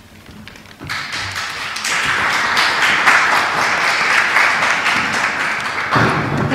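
Audience applauding: the clapping starts about a second in and builds quickly to steady applause.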